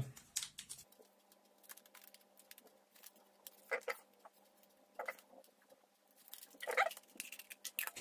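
Foil blister packets of pH test strips being torn open and handled: faint crinkling and rustling with many small clicks, and a few louder crinkles in the second half.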